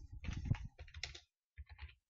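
Typing on a computer keyboard: a quick run of keystrokes, a short pause a little past halfway, then a few more keys near the end.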